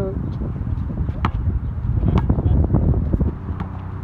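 A basketball bouncing a few separate times on a hard outdoor court, each bounce a short sharp knock, over a steady low rumble of wind on the microphone.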